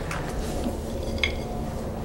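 Steady background hum with a single faint light clink just past a second in.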